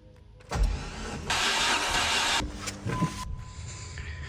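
Dodge Neon SRT-4's 2.4-litre turbocharged four-cylinder spun over on the starter with its spark plugs out and fuel and ignition disabled, cranking without firing. The cranking starts about half a second in and lasts about two seconds. It is a compression test cranking, building pressure on the gauge in one cylinder.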